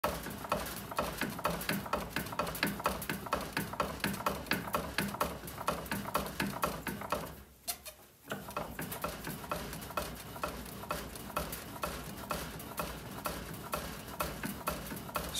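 A Louisville Slugger Meta composite bat rolled back and forth by hand through a bat-rolling machine's rollers during a heat-roll break-in, making a fast rhythmic clicking and rattling at about four clicks a second. The clicking stops for about a second just before the midpoint, then picks up again.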